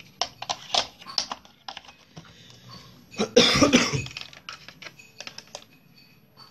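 Plastic clicks and knocks of a plug being fitted and pushed into a switchboard socket, then a louder rasping burst of under a second about three and a half seconds in, followed by a few small clicks.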